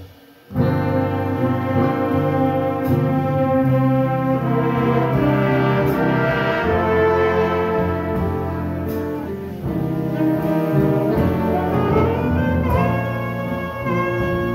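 Jazz big band playing a slow ballad, the saxophone section and brass holding full sustained chords together. The band breaks off for a brief moment at the start, then comes back in.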